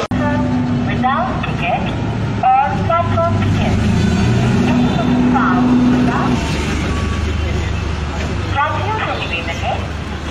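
Diesel engine of a DEMU train running at the platform, a steady low drone throughout, with a crowd of people talking over it.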